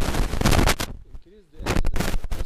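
Loud crackling noise in two stretches, the first cutting off just under a second in and the second starting about a second and a half in, with a faint voice in the gap between.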